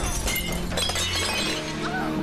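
A vase shattering, struck by a bullet: a sharp crash at the start, then about a second and a half of tinkling, falling shards, over background music.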